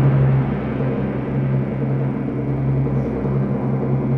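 Wind orchestra holding a loud, sustained low chord with a timpani roll underneath.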